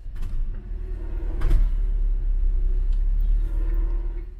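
Citroën DS heard from inside the cabin while driving slowly: a steady, loud, low engine and road rumble.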